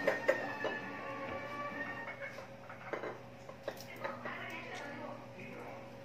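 Faint background music and voices, like a television in the room, with a steady low hum. A few light clicks and taps come from a plastic vinegar bottle and a glass jar being handled.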